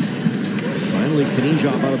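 Mostly speech: a hockey play-by-play commentator calling the action, over faint broadcast rink sound.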